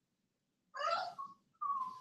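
Dog whining: a faint, high whimper about a second in, then a short, thin whine that sags slightly in pitch near the end.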